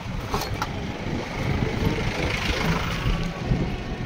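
A small pickup truck driving past on a dirt road: its engine and tyres swell and fade around the middle. Under it runs a heavy, uneven low rumble of wind on the microphone, with a few sharp clicks near the start.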